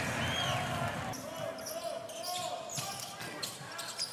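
Basketball arena ambience: a steady crowd murmur with indistinct voices, and faint short knocks of a ball bouncing on the court.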